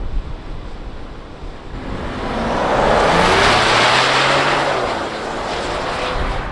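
2020 Ford Police Interceptor Utility hybrid driving past on pavement: engine and tyre noise swell to a peak about three to four seconds in, then fade.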